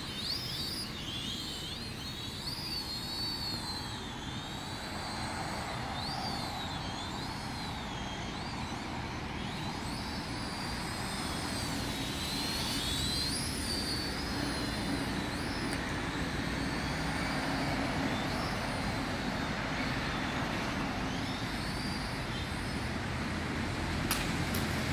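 Small Turbo Tech Star toy drone in flight: its motors and propellers give a high whine whose pitch wavers up and down, over steady background noise.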